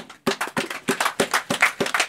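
Hand clapping in a quick, even rhythm, about six claps a second, starting about a quarter second in.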